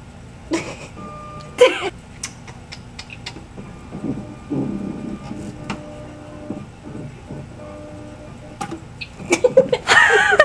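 Non-contact air-puff tonometer in use: scattered clicks and short steady electronic tones while it lines up on the eye, with one sharp louder sound about one and a half seconds in. A woman's nervous laughter starts near the end.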